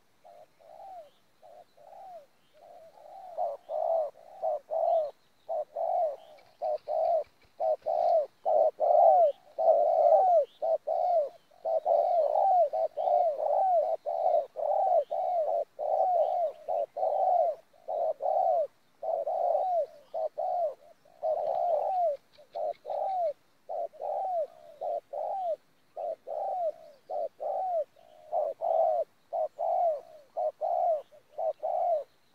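Spotted doves cooing in a long run of short, rounded notes, about two a second, louder from about three seconds in.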